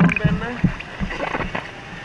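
Pool water sloshing and lapping close to a camera held at the water's surface, with short bits of voice in the first second.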